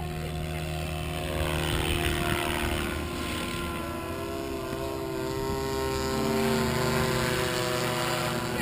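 SAB Goblin 700 radio-controlled helicopter flying, its motor and rotor blades making a steady whine. The pitch dips a little before the middle and rises again as it manoeuvres.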